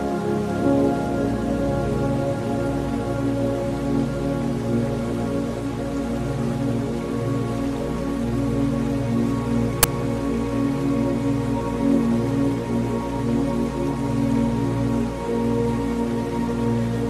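Calm new-age background music of slow, sustained tones over a steady rain-like hiss, with a single sharp click about ten seconds in.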